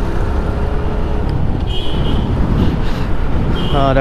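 Wind rushing over the microphone of a moving TVS Stryker 125cc motorcycle, with its single-cylinder engine running steadily at cruising speed and tyre and road noise underneath.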